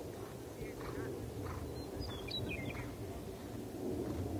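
Steady low outdoor rumble, with a short bird call gliding down in pitch about two seconds in.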